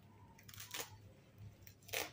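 Baby monkey handling a small plastic toy on bedding: two short clicking rustles about a second apart, the second louder and sharper, over a faint steady low hum.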